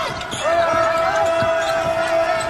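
Basketball dribbled on a hardwood court, bouncing about three times a second, over a steady high-pitched tone.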